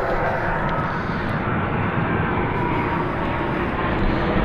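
A steady engine roar with a faint high-pitched whine above it.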